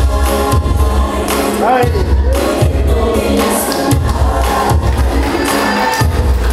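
A gospel song: a choir of many voices singing over music with a deep, pulsing bass.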